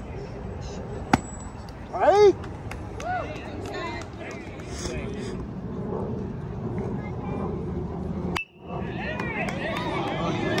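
Baseball game sounds: a sharp pop about a second in, as a pitch lands in the catcher's mitt, then a loud shout. Near the end the bat strikes the ball with a sharp crack and spectators shout and cheer over steady crowd chatter.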